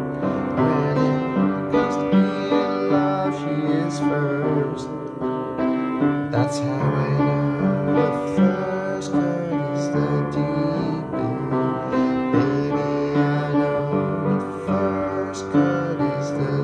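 Instrumental break in a pop-song accompaniment: piano or keyboard chords over a moving bass line, steady throughout, with no singing.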